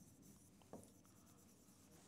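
Very faint strokes of a pen writing on a board, almost at silence, with one small tick about three quarters of a second in.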